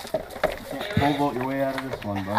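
A man's voice holding one drawn-out low, wordless sound for about a second, starting halfway in, after faint background chatter and a few clicks.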